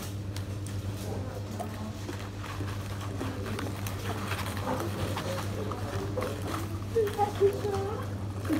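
Restaurant background sound: a steady low hum with faint voices of other people and light rustling of a paper food box. A brief voice rises near the end.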